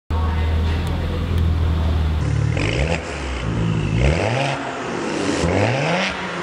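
Maserati Ghibli S twin-turbo V6 idling through an ARMYTRIX valved exhaust with the valves open. From about two and a half seconds in it is blipped several times, each a short quick rise in revs.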